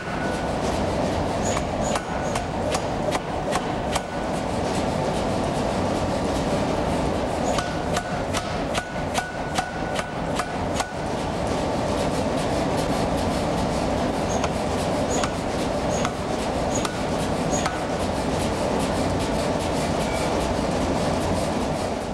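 Power forging hammer with a 400 kg ram striking a red-hot strip of tool steel on the anvil in rapid blows, several a second, over a steady background noise. The blows come densely in the first half and thin out in the second half.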